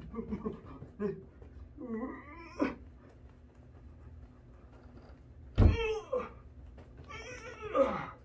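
A person grunting and groaning with strain. There are short grunts at first, a wavering groan about two seconds in, a loud sudden grunt a little after five seconds, and a long falling groan near the end.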